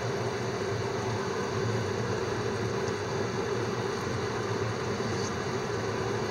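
Steady hum and hiss from a gas stove with a pan of beef tendon stew heating on it.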